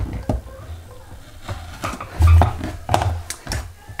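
A rotary cutter and a fabric strip being handled on a cutting mat while a seam is trimmed: a scatter of small clicks and taps, with low bumps against the table loudest a little after two seconds in.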